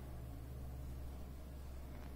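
OTIS observation elevator car travelling: a steady low hum from the moving car.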